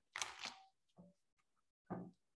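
A deck of Lenormand (Baralho Cigano) cards riffle-shuffled: one short burst of rapid card clicks lasting about half a second, followed by a faint tap about a second in.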